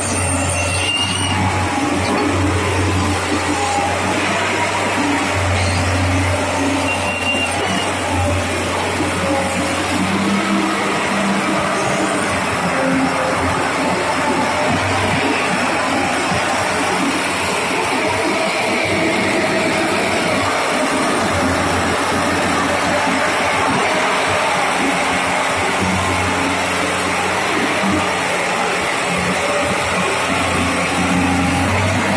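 Tata Hitachi Super 200 LC crawler excavator's diesel engine running at a steady level.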